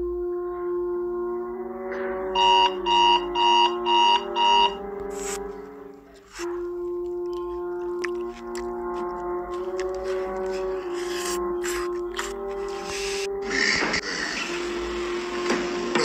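Slow music of held notes, with an electronic minute timer beeping five times about two and a half seconds in, roughly two beeps a second. The music breaks off briefly around six seconds, and a noisier rustling sound joins it near the end.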